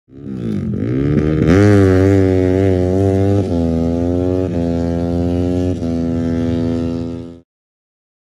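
A deep, loud droning tone that swoops down and back up in pitch at the start, then holds steady with a few small jumps in pitch, and cuts off abruptly a little before the end.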